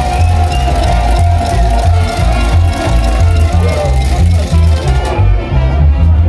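Carnival dance band playing loud music with a steady, heavy bass beat under a melody of held notes. About five seconds in, the sound loses its treble and turns duller.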